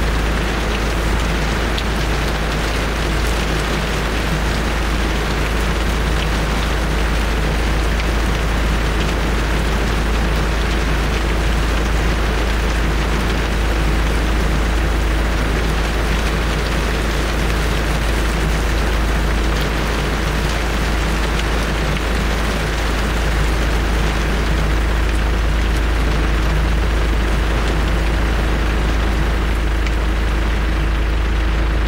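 Heavy rain falling steadily, with a constant deep rumble underneath.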